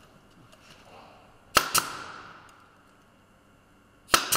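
Pneumatic nailer firing twice in quick succession into OSB board, two sharp cracks about a fifth of a second apart, followed by a hiss of exhaust air that fades away.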